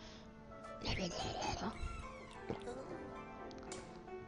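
Background music with steady tones, with a short, louder wavering voice-like sound about a second in.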